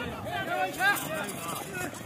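People's voices talking and calling out, softer than a close announcer, over a light outdoor background noise.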